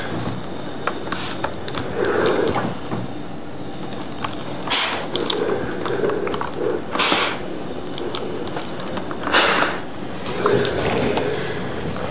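Steam iron pressing a crease into trousers on an ironing board: three short hisses of steam, about two and a half seconds apart, with soft fabric rustle as the iron is pressed and lifted between them.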